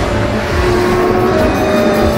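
Loud theme music for a car show's title card, mixed with a car engine sound effect.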